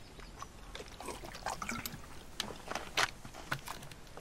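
A man drinking in gulps from a plastic bottle, then the crinkling of a plastic wrapper in his hands, as a run of short crackles and clicks in the second half.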